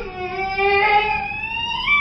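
One long scream from a young boy, its pitch rising near the end.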